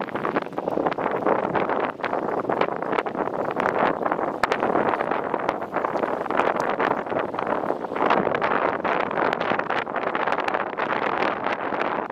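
Wind blowing across the microphone over choppy harbour water: a steady, rough rushing that swells and dips, with frequent small crackles.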